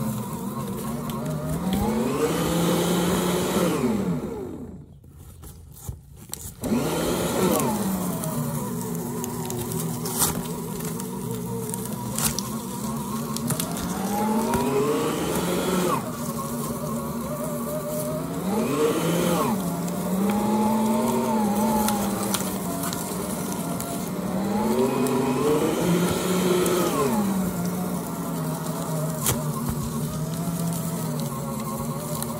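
Royal micro-cut paper shredder running as cardboard and paper packaging is fed through it, its motor buzzing with a pitch that swells and falls several times as pieces pass through the cutters, with sharp crackles of cardboard being cut. The motor stops for about a second and a half about five seconds in, then starts again.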